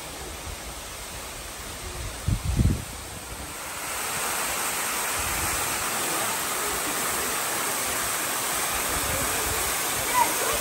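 Steady rushing of a tall waterfall, King David's Stream waterfall in the Ein Gedi oasis, growing louder and brighter about four seconds in. A brief low thump about two and a half seconds in.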